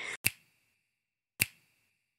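Two sharp snaps about a second apart, each with a brief ringing tail, against dead silence between them: a transition sound effect.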